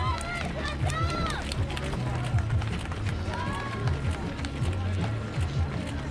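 Many runners' footfalls on pavement as a pack passes close by, with spectators' voices calling out over them.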